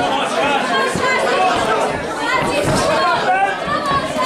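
Boxing-match spectators talking and calling out, many voices overlapping in a busy, steady chatter.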